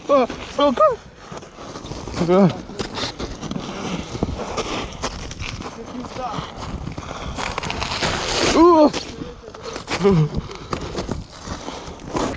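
Shoes scuffing and slipping on an icy, snow-dusted roof, with several short shouts from young men, the loudest about two-thirds of the way in.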